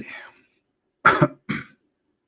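A man coughing: a rough vocal sound trails off at the start, then two short coughs about a second in, half a second apart.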